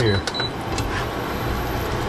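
Short high electronic beeps from an induction cooktop's control panel near the start as the heat is turned up, then a steady hiss of chopped beef frying in a nonstick pan with the light scrape and click of a plastic spatula.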